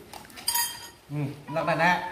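A metal spoon clinks once against the serving pot and dishes about half a second in, with a short bright ring. A man's voice then talks.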